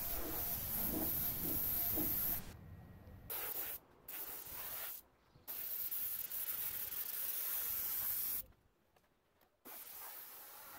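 Gravity-feed compressed-air paint spray gun hissing as it sprays, in several bursts that start and stop as the trigger is pulled and released, with a longer break near the end.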